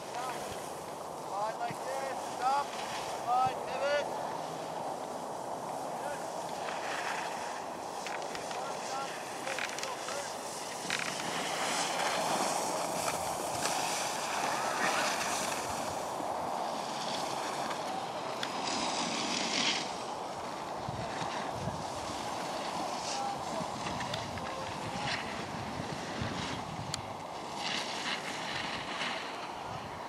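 Skis sliding and scraping over snow on a downhill run, with wind noise on the microphone.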